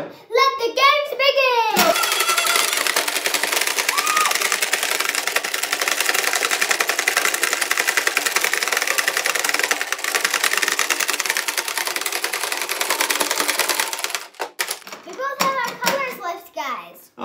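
Hungry Dino tabletop game being played flat out: plastic dinosaur heads snapping as the levers are pounded rapidly, with plastic balls rattling across the board, in one continuous dense clatter. It starts about two seconds in and stops abruptly near the end.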